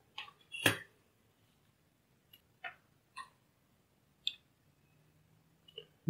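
A few faint, scattered clicks and small taps from handling the soldered SMD-to-DIP adapter and touching its pins with tweezers, with one sharper click about two-thirds of a second in.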